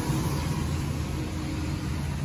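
Road traffic: a steady hiss with a low engine hum underneath, with no sharp sounds.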